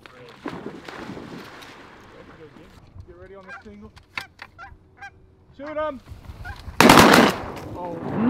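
Canada geese honking in short calls, then a single loud shotgun shot about seven seconds in.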